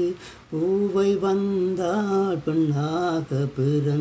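A man singing a Tamil film song unaccompanied. After a brief breath at the start, he holds long steady notes in short phrases, with quick breaks between them.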